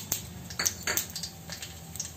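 A few short, light clicks and taps as ginger slices drop into oil in an iron kadai, with only a faint crackle from the oil.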